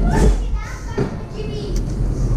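Children's voices chattering and calling out over the low rumble of a wooden roller coaster train rolling into its station.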